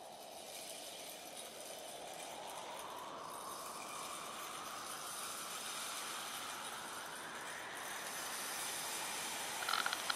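A steady rushing noise that grows slowly louder, its tone sweeping gently up and down.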